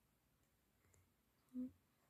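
Near silence: room tone with one short hummed vocal sound, a brief 'mm' from a girl, about one and a half seconds in.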